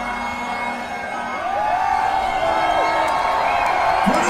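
Live hip-hop concert crowd cheering and whooping, many voices rising and falling together, building from about a second in after the bass-heavy music cuts off at the start; a few held tones linger underneath.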